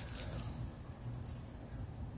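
Quiet background noise with a low steady hum and a faint tick just after the start; no distinct sound event.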